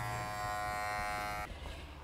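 Wahl Figura cordless lithium-ion clipper running with a steady hum as it trims the hair at a horse's fetlock; the hum cuts off about one and a half seconds in.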